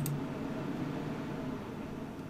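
Steady background noise, a low even hiss with no distinct events: room tone or the hum of a computer fan picked up by the narration microphone.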